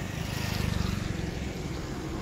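Diesel truck engine idling close by, a steady low throb with a fast even pulse that swells a little about half a second in.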